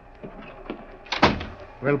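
Radio-drama sound effect of a door being shut: one sharp knock about a second in, after a few lighter knocks.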